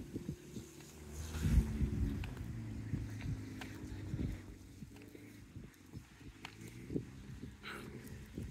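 Low outdoor rumble of wind on the microphone, with a few soft footsteps on the pavement while walking.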